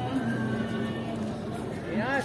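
Indistinct voices of people in a paved courtyard, with a steady low hum underneath. A high cry that rises and falls in pitch comes in right at the end.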